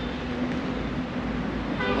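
Steady outdoor background noise: an even hiss with a low, unchanging hum running under it.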